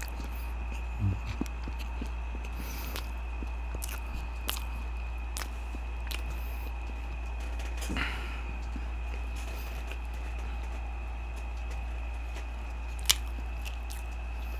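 Quiet close-miked chewing of fried chicken nuggets with scattered soft mouth clicks, over a steady low hum and a faint high whine. Near the end there is one sharp click as the cap of a juice carton is twisted.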